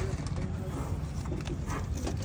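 Steady low rumble of background noise with faint voices and a few light clicks, one of them near the end.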